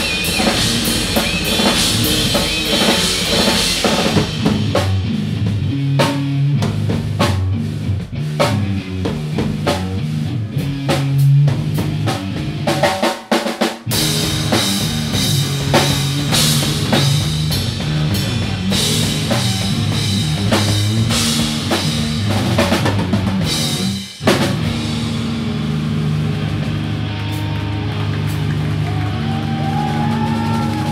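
Live rock band playing an instrumental passage: loud electric guitar over bass and a drum kit. The music drops out briefly about 13 s in and again about 24 s in, after which the guitar carries on with lighter drumming.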